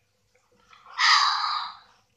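A long, breathy exhale close to the microphone, swelling about half a second in and fading away before the end.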